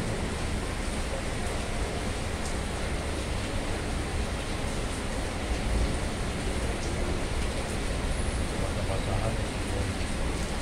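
Heavy rain falling, a steady hiss with a low rumble underneath.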